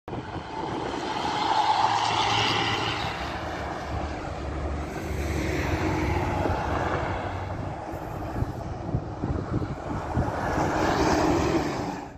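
Intercity buses driving past on a highway, engine and tyre noise rising and falling as each one passes.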